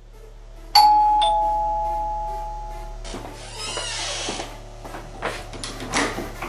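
Two-note ding-dong doorbell chime, a high note then a lower one, ringing out for a couple of seconds. Then come rattling and a few sharp clicks as a metal door bolt is drawn back.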